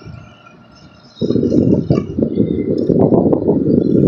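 Tractor-drawn rotary ditcher cutting a ditch and throwing soil, heard as a rough, rushing rattle with scattered sharp clicks that comes in suddenly and loud about a second in.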